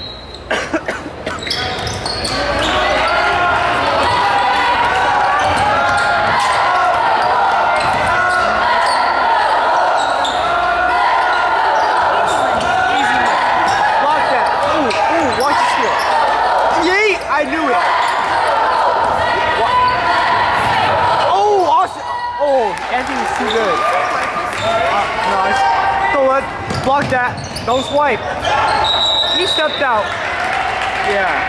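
Basketball game in a gym: steady crowd chatter from the bleachers, a ball dribbling on the hardwood court, sneakers squeaking a few times during play, and a short, shrill referee's whistle near the end as a player goes down.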